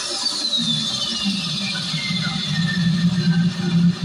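Pizaro 7800BT tower speaker playing the intro of an electronic track: a high synth tone sliding slowly down in pitch over a wavering low drone.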